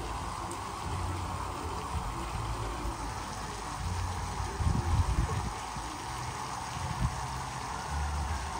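Water running steadily into a lily pond, with a low rumble underneath that swells briefly about five seconds in.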